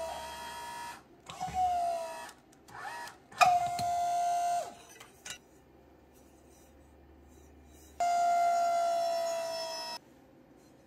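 Motor of a small electric press running in spells of a few seconds, a steady whine that sags slightly in pitch as the press squeezes the end of a steel tube flat. A sharp click comes about three and a half seconds in, there is a quiet spell in the middle, and the motor whine starts again about eight seconds in.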